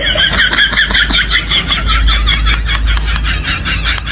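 High-pitched laugh, rapid and pulsing at about seven pulses a second, running on without a break over a low hum.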